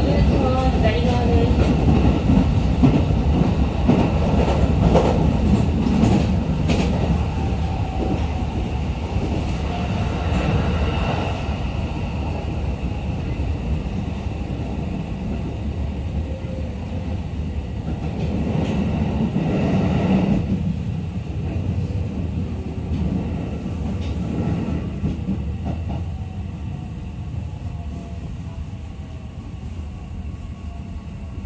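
Running sound heard inside a JR East E501 series electric train car: a steady rumble of wheels on rail with electric motor whine. The whine falls in pitch several times and the whole sound eases off toward the end as the train slows.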